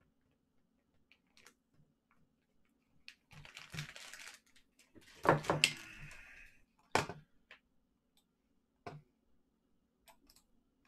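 Scattered clicks and taps of a computer mouse and keyboard at a desk, with a stretch of rustling a few seconds in and a louder clatter about five seconds in. A faint steady hum runs underneath.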